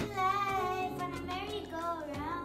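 A young girl singing held notes over backing music, the pitch bending gently on each note.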